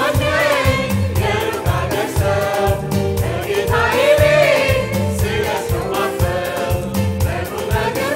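Mixed choir of men's and women's voices singing a gospel song, backed by keyboard and a drum kit keeping a steady beat.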